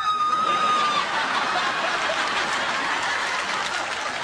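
A single held, high-pitched yell lasting about a second, then a studio audience laughing and applauding.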